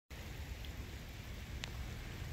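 Steady hiss of light rain with a low wind rumble on the microphone, and one faint click about one and a half seconds in.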